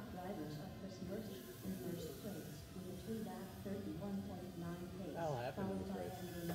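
Indistinct background voices talking, with faint music underneath.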